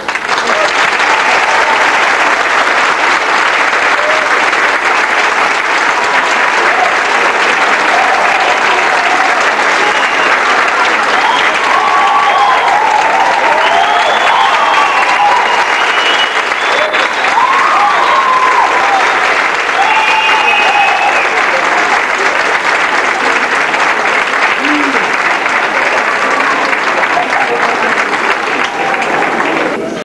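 Theatre audience applauding steadily, with scattered voices cheering over the clapping for a stretch in the middle.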